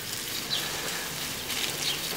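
Water spraying from the end of a garden hose onto plants and soil: a steady hiss of spray.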